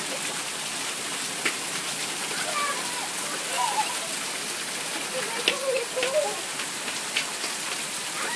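Steady downpour of rain falling on a gravel yard and wet pavement, with a few sharp taps of drops close by.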